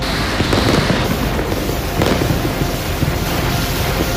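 A chain of explosions at a bombed rocket depot, heard as a loud, dense, continuous crackling and popping, with music underneath.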